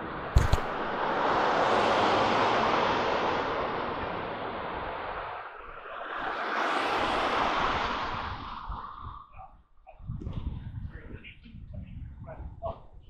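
A sharp click, then two vehicles passing on the street close by: each a rushing tyre and road noise that swells and fades, the first loudest about two seconds in and the second about seven seconds in.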